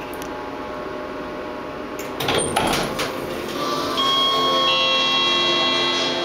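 Elevator car doors sliding open with a clatter of knocks about two seconds in, over a steady hum. Then background music comes in through the open doors.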